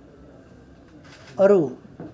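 A man's voice after a pause in speech: faint room tone, then a single drawn-out spoken word with a falling pitch about one and a half seconds in.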